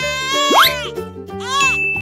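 Cartoon sound effects over children's background music: a quick rising whistle slide about half a second in, then bell-like dings near the end.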